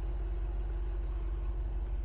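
A vehicle engine idling steadily, a low, evenly pulsing rumble with a steady hum above it.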